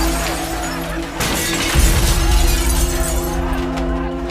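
Shop-window plate glass shattering: a dense spray of breaking glass, with a second, louder surge about a second in, dying down after about three seconds. Underneath runs a music score of held tones.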